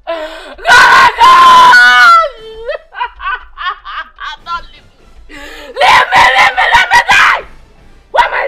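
A woman wailing in grief. A long, high scream about a second in falls away, short sobbing cries follow, and a loud burst of broken wailing comes near the end.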